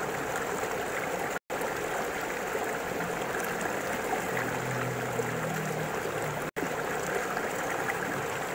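Steady rush of flowing stream water, with the audio cutting out for an instant twice.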